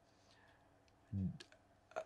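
A brief pause in a man's talk: mostly quiet, with one short voiced sound from him about a second in and a few faint clicks.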